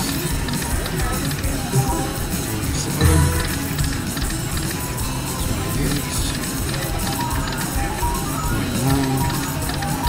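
Music on a casino floor with background voices, and a brief low thud about three seconds in.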